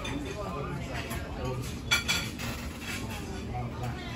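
A single sharp clink of tableware, metal cutlery against a ceramic plate or glass, with a brief ringing about two seconds in, over a low murmur of voices.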